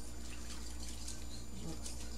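A whisk stirring a liquid salad dressing in a mixing bowl: faint sloshing with scattered light ticks of the whisk against the bowl.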